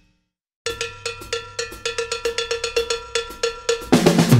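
Opening of a pop-rock song: after about half a second of silence, a rapid, even run of pitched percussion hits, all on the same note, about six a second.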